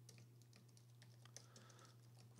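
Faint typing on a computer keyboard: scattered soft key clicks over a low steady hum.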